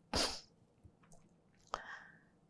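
A man's short, sharp intake of breath through the nose, like a sniff, in a pause between sentences, followed by a faint mouth click near the end.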